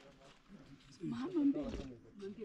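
Quiet for about a second, then a woman's voice speaking a few words in a wavering pitch.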